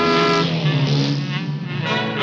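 Cartoon orchestral score playing over the sound effect of a small motorbike engine running.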